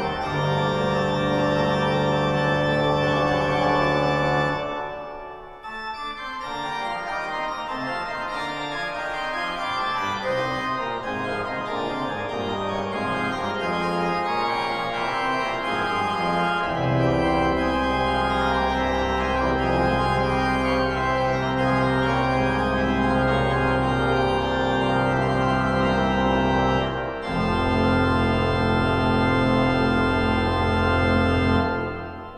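Pipe organ played on manuals and pedals. A deep held pedal bass stops about four and a half seconds in, a lighter passage on the manuals follows, and the deep pedal bass comes back just past halfway, with a brief break near the end.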